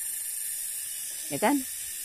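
Cicadas (tongeret) buzzing in a steady, high, unbroken drone.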